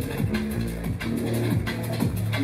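Drum and bass music from a DJ set playing over a club sound system. A fast, even beat runs over deep bass notes, some of which slide down in pitch.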